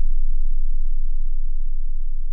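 Deep, sustained synth bass tone ringing out at the tail of a slowed hip-hop track, slowly getting quieter, with no vocals.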